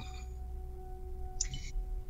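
A steady, pure sustained tone at one pitch with a fainter overtone, held under a pause in speech, with a short soft hiss about one and a half seconds in.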